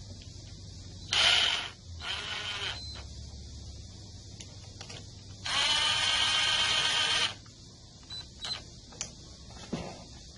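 Cordless power driver spinning a socket on an extension against the cylinder head of a Briggs and Stratton V-twin small engine, in three runs: two short bursts about a second in, then a longer run of about two seconds. Near the end come a few light clicks of hand-tool work.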